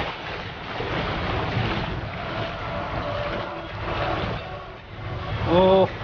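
Flowing stream water and the splashing of legs wading thigh-deep through the current, a steady rushing noise. A short voiced call cuts in near the end.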